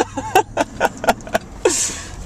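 Laughter: a run of short 'ha' pulses at about five a second, ending in a breathy gasp near the end. Under it runs the steady low road noise of an SUV's cabin.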